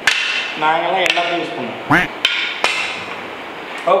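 Pool cue striking the cue ball and billiard balls clacking together: a sharp clack at the start, another about a second in, and two more in quick succession past the middle.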